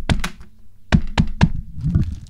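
Knocking on a door: two knocks, then three more about a second in.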